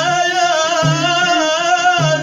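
Live Moroccan Amazigh folk music: a man's singing voice and a violin played upright on the knee holding one long wavering note, over frame drums beating a slow steady pulse about once a second.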